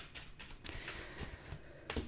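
Tarot cards being shuffled and dealt onto a table: a faint papery shuffling with light clicks, and a sharp tap of cards landing on the tabletop just before the end.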